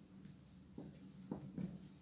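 Marker pen writing on a whiteboard: faint short strokes, with a few more distinct ones in the second half.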